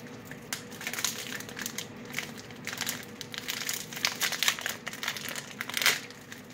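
Crinkly plastic wrapper of a packet of banana-cream wafers crackling irregularly as it is handled and opened by hand.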